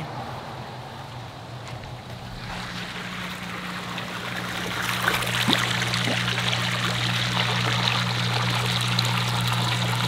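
Water trickling and running steadily, getting louder a few seconds in, over a steady low hum.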